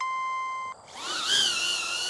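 HOVERAir X1 Smart palm-launched camera drone: a steady electronic beep lasting under a second, then its propellers spinning up with a rising, wavering whine as it lifts off from the hand and settles into a steady hover.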